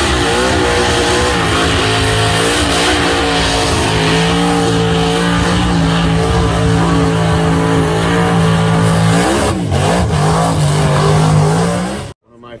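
Car engine held at high revs during a burnout, the rear tyres spinning on the pavement. Near the end the revs dip briefly, then climb back to the same steady note.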